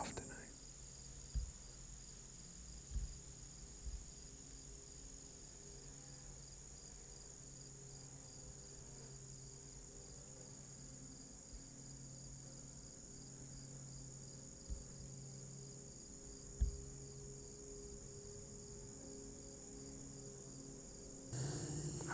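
Faint, steady high-pitched chorus of insects in summer vegetation, with a faint low hum that comes and goes. A few soft low thumps sound early on and near 15 and 16.5 seconds.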